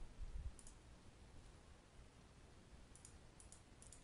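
Faint computer mouse clicks in near silence: a couple about half a second in and a short run of them near the end, from clicking through Excel's Correlation dialog.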